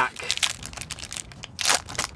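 Foil wrapper of a Pokémon booster pack crinkling in the hands as it is torn open, with a louder rip near the end.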